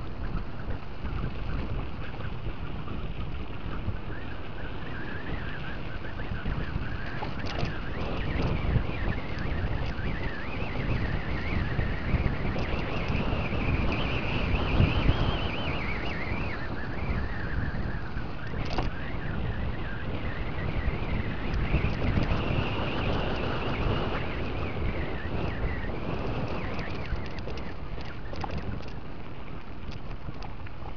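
Wind buffeting the microphone over a steady rumble of a mountain bike rolling down a ribbed concrete path, with a few sharp knocks. A wavering high-pitched squeal rises and falls twice, once in the middle and again later.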